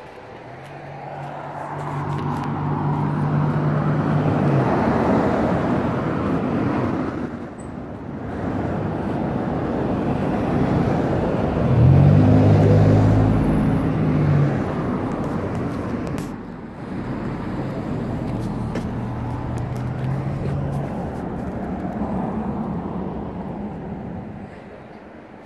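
Road traffic passing close by: several vehicles go past one after another, each a swelling and fading rush of tyre and engine noise with a low engine hum. The loudest pass comes about twelve seconds in.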